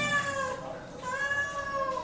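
A kitten meowing twice, two long high-pitched meows that rise and fall in pitch, begging for food.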